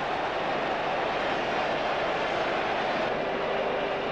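Steady noise of a football stadium crowd, with a faint single held tone joining in near the end.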